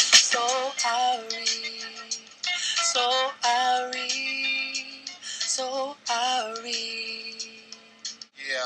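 A man singing live into a handheld microphone: phrases of short, bending notes, each ending in a long held note.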